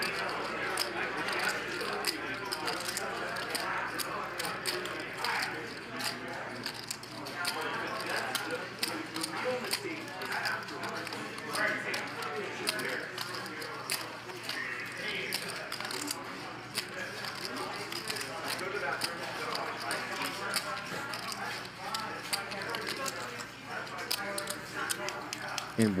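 Poker chips clicking steadily as a player handles a stack at the table, under a low murmur of voices.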